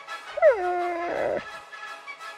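A cartoon dog's whining cry: one note that slides down and then holds, turning rough before it stops, lasting about a second. It is the dog's heartbroken reaction, over light background music with an even beat.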